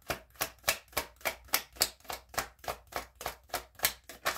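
A deck of oracle cards being shuffled hand to hand, an even run of short card slaps about five a second.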